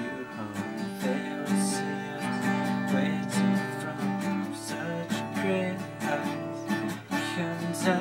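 Acoustic guitar strummed steadily through a chord progression, with no singing.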